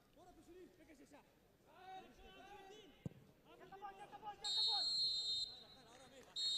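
Referee's whistle blowing for full time: one loud, steady blast about a second long, a little past the middle, over faint shouting voices from the pitch.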